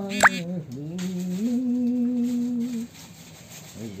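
An elderly woman singing slowly and unaccompanied, holding long steady notes, with a short break in the phrase near the end. Just after the start, a brief sharp rising squeak is the loudest sound.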